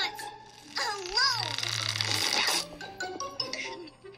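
Cartoon soundtrack heard through a tablet's speaker: a pitched vocal cry about a second in, then a hissing rush of air lasting about a second as an inflatable bounce pit deflates and collapses, over background music.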